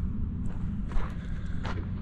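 Footsteps crunching on dry, packed desert dirt, a few steps a second apart, over a low steady hum.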